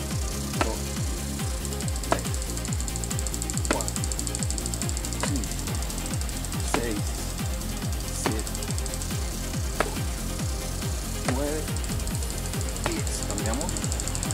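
Background music with a fast steady beat, over sharp knocks about every second and a half: gloved hook punches landing on a padded bag strapped to a tree trunk.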